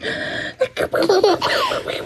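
A toddler laughing in a string of short, high-pitched giggles.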